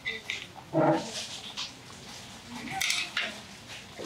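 A few short clinks of stainless-steel bowls and cutlery at a restaurant table, with a brief bit of voice about a second in.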